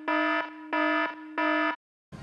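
Electronic buzzer sound effect: three short, evenly spaced low buzzes about two-thirds of a second apart, like an alarm or wrong-answer buzzer, stopping just before the end.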